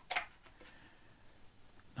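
Near silence: room tone, with one brief soft noise just after the start.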